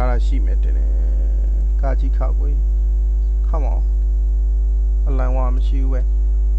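Loud, steady electrical mains hum picked up on the narrator's microphone, with a few brief murmured voice sounds in between.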